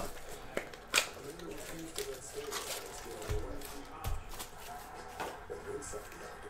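Cardboard hobby box being pulled open and its foil card packs slid out and handled: light scattered rustles and clicks, the sharpest a snap about a second in.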